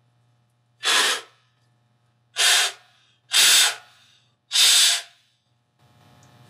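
Four short, loud puffs of breath blown into a small blower fan held close to the mouth, about a second or so apart.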